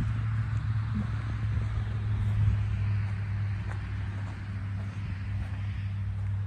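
A steady low hum from something running, unchanged throughout, with a faint hiss above it.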